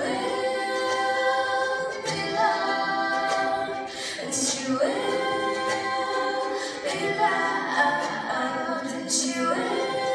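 Two women singing together into microphones with light ukulele accompaniment, in long held notes.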